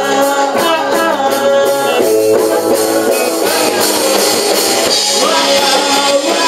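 Live punk rock band playing: a male voice singing into the microphone over electric guitar and drums, with the singer's guitar low in the mix.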